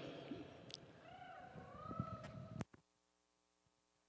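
A faint bovine bawl, wavering in pitch, over a low background murmur. About two and a half seconds in, the sound cuts off abruptly to a steady low hum.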